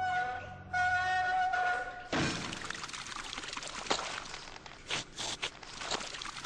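Flute-like music for about two seconds, then a rush of liquid pouring out of a pipe, with a few sharp splashes or knocks near the end.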